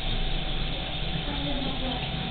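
Steady room background noise: a low hum and hiss with a thin, faint steady whine.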